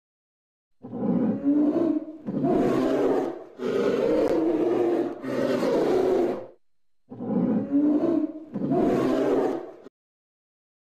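Polar bear growling: six long, rough growls of a second or so each, four in a row, a short pause, then two more. The sound cuts off suddenly just before the end.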